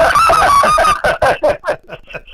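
A man laughing heartily: a quick run of 'ha' pulses for about a second, then a few separate pulses that trail off.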